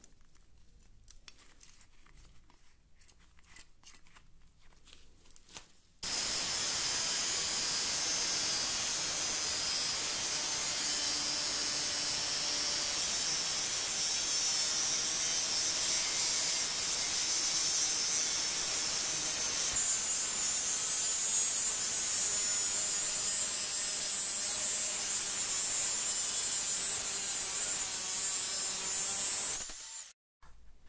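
Faint handling sounds for the first few seconds. Then a handheld angle grinder starts suddenly and runs steadily with its abrasive cut-off disc cutting through steel, until it stops abruptly just before the end.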